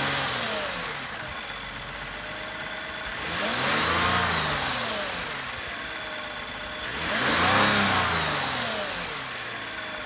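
2018 Toyota Camry XSE's 3.5-litre V6 idling with the hood open. It is revved up and let fall back to idle twice, about four seconds apart, after dropping back from a rev at the very start.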